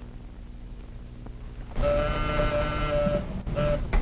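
Office intercom buzzer: one long buzz of about a second and a half, then a short second buzz, the signal that the receptionist is calling through.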